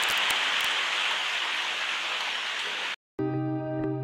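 Steady hiss of heavy rain, which cuts off suddenly about three seconds in. After a brief silence, guitar music begins near the end.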